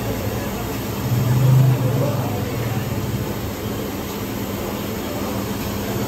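Steady roar of commercial gas burners with a low hum underneath, swelling briefly a second or so in.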